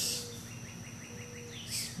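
A faint, quick run of about eight short, high chirps, each sliding down in pitch, from a small bird in the background; it lasts about a second.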